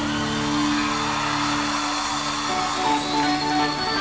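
Live rock band playing steady held chords, with no vocal line.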